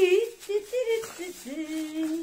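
A woman's wordless, sung-sounding vocalising: short pitched exclamations, then one held tone from about one and a half seconds in.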